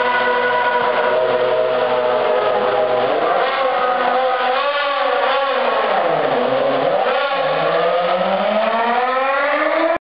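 Force India Formula One car's V8 engine running in the pit garage, its note holding steady, then dropping about two-thirds of the way through and climbing steadily as the car pulls out. The sound cuts off suddenly at the end.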